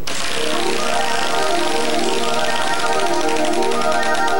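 Large game-show prize wheel spinning, its pointer clicking rapidly against the pegs around the rim, with music playing underneath.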